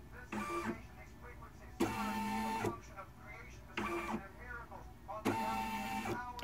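Baby Lock Flourish embroidery machine's hoop-drive motors running in four short moves, each about half a second to a second long with pauses between, as the machine traces the outline of the design before stitching.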